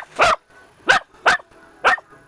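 Three-month-old Lagotto Romagnolo puppy barking: five short, sharp barks, spaced about half a second apart.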